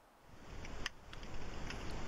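Faint microphone hiss with a few soft clicks, starting about half a second in out of dead silence: the quiet lead-in of a voiceover recording just before the narrator speaks.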